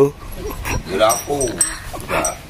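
A person's voice giving two short, wavering "oh" cries about half a second apart.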